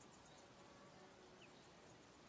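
Near silence: faint outdoor ambience with a faint insect buzz.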